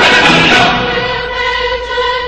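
Choral soundtrack music: a choir holding a chord, the lower voices dropping out after about half a second while the upper notes hold on and fade.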